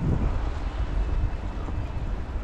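Wind buffeting the microphone during heavy snowfall: an uneven low rumble under a steady hiss, with a brief surge right at the start.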